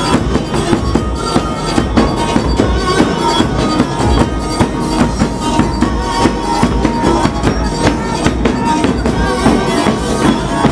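Festive traditional-style music driven by a fast, steady beat on large bass drums, with a held melodic note running over it.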